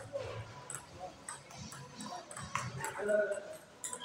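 Table tennis rally: the celluloid ball clicks off paddles and the table several times at uneven spacing. A short high-pitched whine comes about three seconds in and is the loudest sound.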